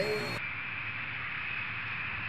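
Steady high whine and rush of a jet aircraft running on the apron, after a man's voice breaks off in the first half second.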